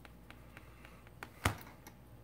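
Light clicks and taps of a precision screwdriver and fingers handling a smartphone, with one sharper click about one and a half seconds in.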